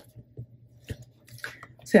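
Paper and card being handled in a planner binder: a sharp tap at the start, then a few light ticks and soft rustling as a card slides into the binder pocket and a notebook is lifted.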